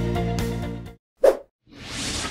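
Background music that stops about a second in, followed by a short pop and then a whoosh transition sound effect that swells toward the end.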